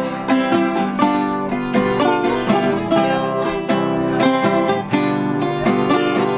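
Viola caipira and nylon-string classical guitar playing an instrumental break between sung verses of a caipira song, with a brisk, even run of plucked and strummed notes.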